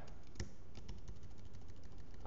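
Quick typing on a computer keyboard: a single key click, then a fast run of about a dozen key clicks lasting about a second as the word "Products" is typed.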